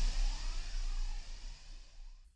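Tail of a swooshing intro sound effect: a hissing rush over a deep steady rumble, fading away toward the end.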